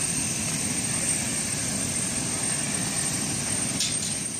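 Aircraft engine running, a steady, even drone with no breaks.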